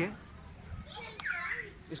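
A pause in the talk filled with faint street background: a low rumble, and a brief high-pitched voice, perhaps a child's, about a second in.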